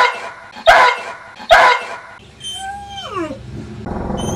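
A dog barking three times in quick succession, loud and sharp, followed by a drawn-out cry that falls away in pitch, a howl.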